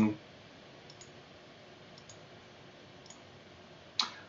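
Three faint computer mouse clicks, about a second apart, over quiet room tone.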